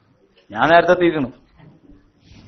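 A man's voice in a lecture: a pause, then one short drawn-out word about half a second in, rising and falling in pitch.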